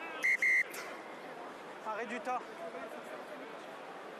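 A referee's whistle blown in two short blasts in quick succession near the start, over faint crowd noise, with faint distant voices about two seconds in.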